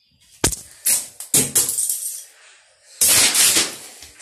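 Handling noise from a phone being picked up and moved: a sharp knock about half a second in, a few rubbing and rattling bumps, then a loud rush of rubbing on the microphone about three seconds in.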